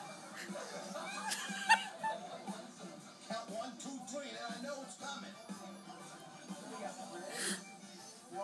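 Television audio playing in the room: music under voices and laughter, with a sharp click about two seconds in and a short noisy burst near the end.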